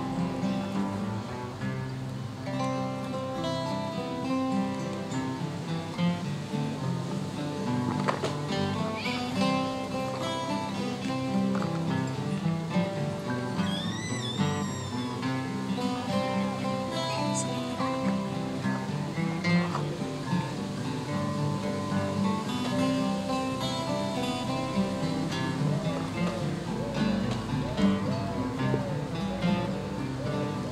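A group of about a dozen acoustic guitars playing a jig together.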